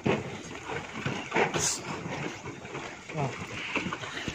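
Quiet outdoor background with faint, indistinct voices of people walking, and a short hiss about one and a half seconds in.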